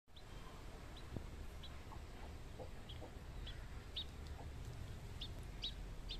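Faint high peeps of a hatching chick inside a pipped, cracked chicken egg: about eight short cheeps, irregularly spaced.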